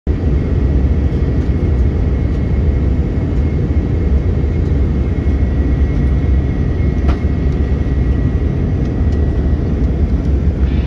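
Steady cabin noise of an Airbus A319 airliner in flight, heard from a window seat: the engines and the airflow make a loud, even low rumble, with a thin steady high whine over it.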